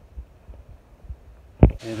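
Dull low thumps at an uneven pace, from walking steps and handling of a hand-held phone's microphone, then one loud knock near the end. A steady hiss comes in as the shot changes.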